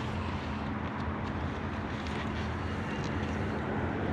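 Steady outdoor background noise: a low rumble and hum with a hiss above it, unchanging throughout.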